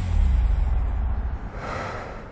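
The closing tail of a commercial soundtrack: a low rumble dying away after the music stops, with a soft breathy swell about a second and a half in, fading out.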